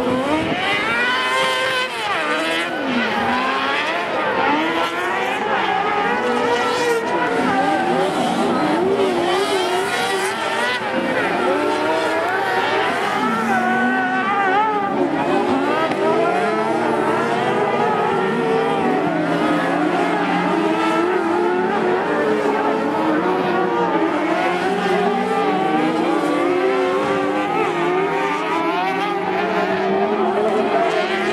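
Several carcross buggies racing on a dirt track. Their high-revving motorcycle engines climb and fall in pitch over and over as the drivers shift and slide through the corners.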